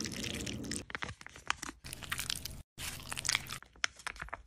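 Fingers kneading and squishing a thick, glitter-flecked gel face mask, giving quick sticky crackles and squelches. The sound breaks off about two and a half seconds in, then more dense crackling follows.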